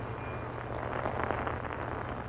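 Quiet instrumental passage of a folk-rock song between sung lines: a held low note under a soft, even wash of sound.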